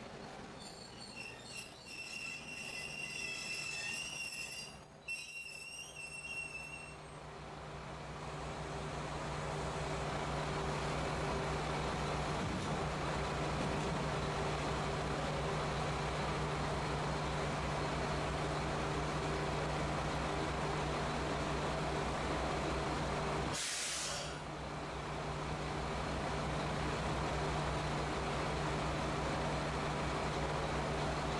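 JR Shikoku diesel railcar coming to a stop with its brakes squealing in wavering high tones for the first several seconds, then its diesel engine idling with a steady low hum. A short hiss of released air comes about three-quarters of the way through.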